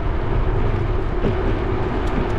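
Wind noise on a GoPro's microphone while cycling along a street: a steady, loud low rumble.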